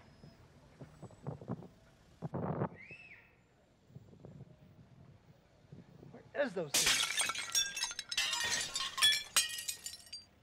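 Plastic bags crackling and rustling as they are rummaged through, for about the last three seconds.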